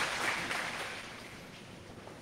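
Congregation applause dying away, leaving quiet room tone.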